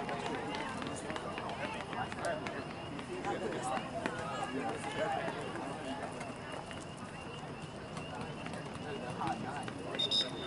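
Indistinct, overlapping voices of people talking at an outdoor sports field, with a few scattered sharp clicks.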